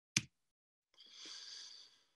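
A single sharp click, then a breath drawn in for about a second, the pause before a man speaks.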